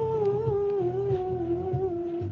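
A man humming one long, held note that slowly drifts down in pitch, with a low pulsing bass underneath.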